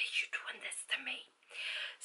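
A woman whispering a few breathy, unvoiced words in short bursts.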